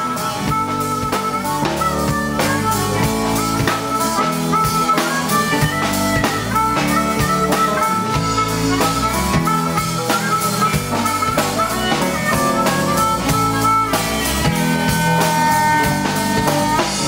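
Live band playing an instrumental section with no singing: drum kit, bass guitar and electric keyboard carrying a melodic line. Near the end a harmonica comes in with long held notes.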